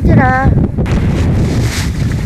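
A woman's brief spoken reply, then strong wind buffeting the microphone from about a second in: a loud, steady rushing noise over a low rumble.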